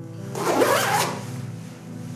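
Zip of a puffer jacket pulled up in one quick stroke, a rasp lasting under a second.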